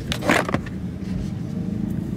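Inside a car cabin, the engine and road noise hum steadily and low, with a short rushing noise about a quarter of a second in.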